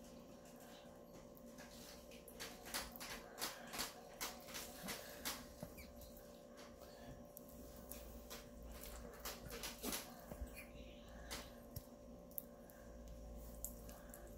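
Faint clicks and light taps of flat metal kebab skewers and steel bowls being handled while chunks of marinated lamb are pushed onto a skewer. The clicks come in two clusters over a steady low hum.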